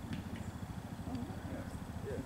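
Car engine idling, a steady low rhythmic pulse.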